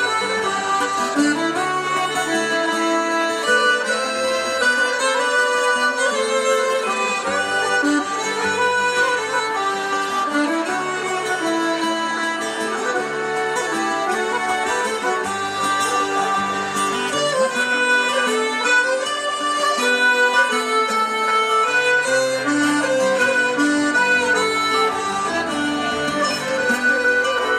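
Live folk band music: a violin bowing a melody over sustained reed-like accompaniment and a moving bass line, played at a steady level.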